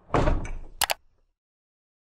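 Logo-animation sound effect: a swoosh lasting about half a second, ending in two quick sharp clicks.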